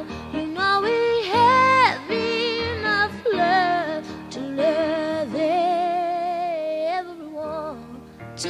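A female voice singing long held notes with a wavering vibrato, sliding up and down between them over soft instrumental backing, in a 1970s folk-soul song.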